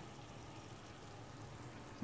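Faint steady background noise in a kitchen, with no distinct sounds standing out.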